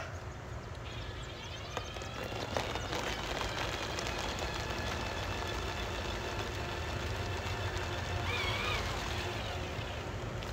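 Drill running steadily as it spins a paint-covered canvas, a continuous whirring hum that swells slightly a couple of seconds in.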